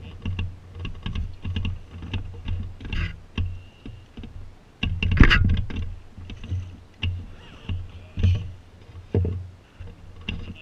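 Fishing gear being worked from an inflatable boat: a run of irregular clicks and knocks from the baitcasting reel and rod handling, with low thuds against the boat and one louder knock about five seconds in.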